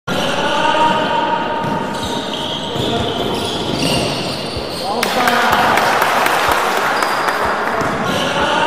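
A basketball dribbled on a hardwood court, bouncing about every 0.7 s, over echoing gym noise with voices. About five seconds in, a dense burst of noise sets in sharply and stays.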